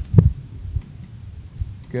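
A single loud, sharp knock with a low thud shortly after the start, followed by fainter low thumps about half a second and a second and a half later.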